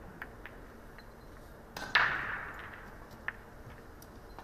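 Pool balls on a Chinese eight-ball table: a few light clicks, then one loud sharp knock about two seconds in that rings and trails off over about a second, as the object ball is potted in the corner pocket.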